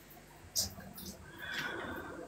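Faint, brief human laughter in a quiet lull between loud talk.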